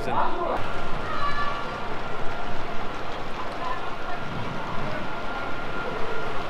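Indistinct voices over a dense steady background noise, with a thin high steady tone running through it.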